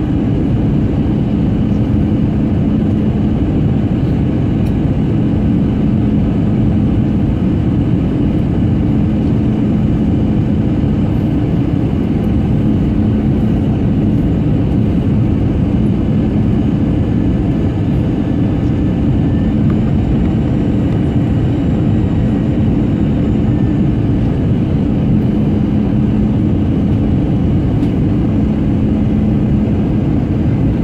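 Airliner cabin noise heard from a window seat on the approach: a loud, steady rumble of engines and airflow with a constant low hum.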